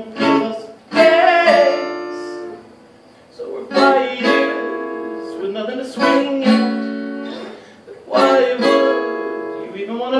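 Acoustic guitar played alone, chords struck every second or two and left to ring between strokes.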